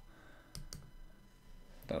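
Two quick, light computer mouse clicks about a fifth of a second apart, roughly half a second in, over quiet room tone.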